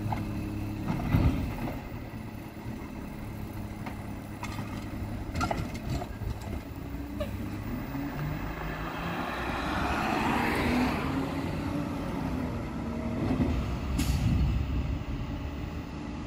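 Automated side-loader garbage truck with its diesel engine running while the hydraulic arm empties a recycling bin into the hopper, with a loud knock about a second in as the load drops. Near the end there is a short hiss of air from the brakes as the truck moves off.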